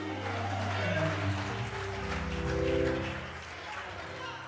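Church organ playing sustained chords beneath the sermon's pause, the chord shifting about a second and a half in.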